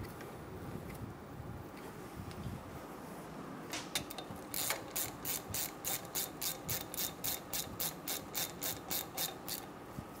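Hand ratchet clicking rapidly, about four clicks a second, as a brake line union bolt is run into a brake caliper; faint handling noise comes before the clicking starts about four seconds in.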